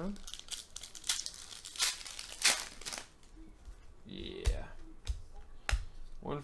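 A foil Panini Excalibur trading-card pack being torn open, the wrapper ripping and crinkling in several quick bursts, followed by a few light clicks of cards being handled.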